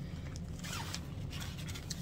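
A zipper on a fabric luggage packing cube being worked by hand, a faint rasping run of the slider.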